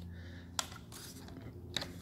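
Two faint plastic clicks, about a second apart, from hands working the controls and rear handle of a Stihl MS180 chainsaw that is not running, over a low steady hum.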